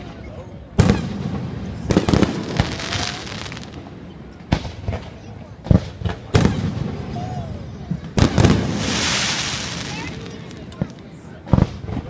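Fireworks display: about a dozen sharp bangs at irregular intervals, with a long crackling shower about eight seconds in. Voices of the watching crowd carry on faintly underneath.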